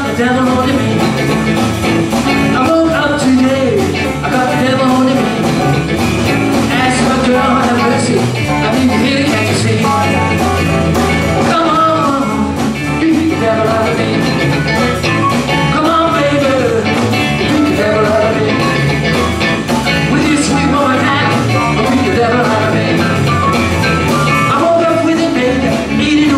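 Live blues band playing an up-tempo number with a steady beat, on electric guitar, bass guitar, drums and keyboard.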